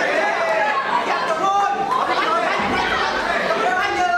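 Many voices talking and shouting over one another without a break: spectators and corner crews calling out during a cage fight.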